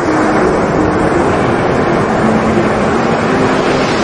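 Shallow surf washing up over wet sand and draining back: a loud, steady rush of water, with faint guitar music notes underneath.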